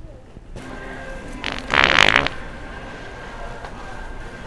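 A loud, buzzy fart sound from an electronic fart-noise prank toy, lasting under a second and about one and a half seconds in, over store background noise.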